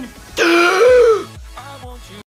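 A loud, drawn-out vocal sound lasting about a second, over music with a low bass line that carries on quietly to the end.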